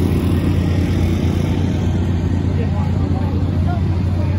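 A steady, loud low engine drone runs throughout, with faint voices of people in the background.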